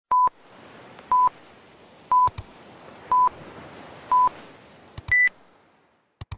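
Electronic interval-timer countdown: five short, identical beeps one second apart, then a single higher-pitched beep that signals the start of the work interval.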